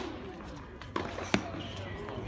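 Two sharp tennis ball impacts about a second in, a moment apart, the second louder, over a low murmur of voices.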